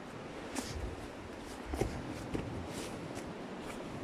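Faint footsteps and rustling of a person climbing over mossy stones through undergrowth, with a few light scuffs and a soft thud a little before the two-second mark.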